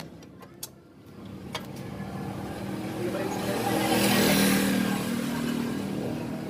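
Motor vehicle engine growing steadily louder to a peak about four seconds in, then easing off.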